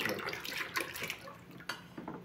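Used cooking oil pouring from an aluminium pot into a plastic bucket, the stream thinning and dying away. A single light click comes near the end.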